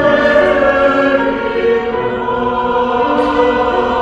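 Mixed church choir singing a choral anthem in parts, holding sustained chords; the sound swells louder at the start.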